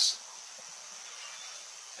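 Faint, steady hiss in the background of a radio sports broadcast, with no speech over it.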